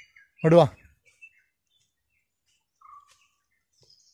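A few faint, short bird chirps and a brief whistled call, sparse among quiet, after one short spoken word about half a second in.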